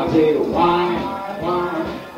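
Traditional New Orleans jazz band recording playing: a melody line moving from note to note over a steady rhythm-section beat.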